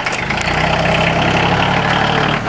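Tractor engine running, picking up to higher, steady revs about half a second in as the front loader works a bucket of compost material.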